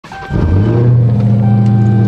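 Dodge Hellcat's supercharged 6.2-litre V8 running at a steady idle, heard from inside the cabin.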